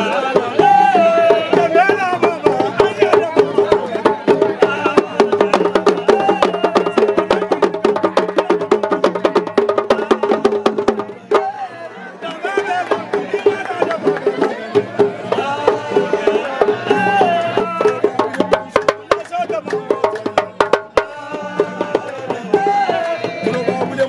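Live traditional West African drumming with voices singing: a small drum struck with a curved stick gives rapid, sharp strokes under the bending vocal lines. The music drops back briefly about eleven seconds in, then picks up again.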